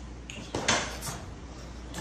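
A short burst of rustling and clattering about half a second in, lasting about half a second, with more starting near the end: shopping bags and the decorations in them being handled.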